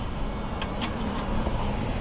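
Steady road traffic noise: the even hum of cars running on the street.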